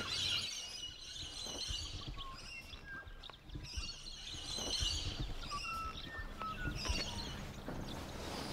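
Small birds chirping and twittering on and off over a low, steady background rumble.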